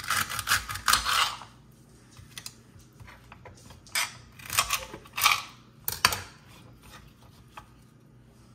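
Celery stalks being cut and moved about on a cutting tray. A quick run of crisp knocks and clicks comes in the first second, then a few separate taps.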